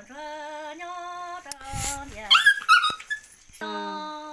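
A woman singing a Hmong kwv txhiaj lament, holding long, wavering notes. About halfway through the song breaks off: a short noisy burst, then several loud, sharp, high animal cries. The singing resumes near the end.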